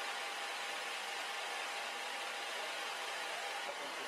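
Steady hissing background noise with a faint high hum running through it; no separate knocks or voices stand out.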